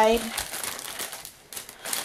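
Plastic sticker packaging crinkling and rustling as it is handled inside a cardboard lunch-box case.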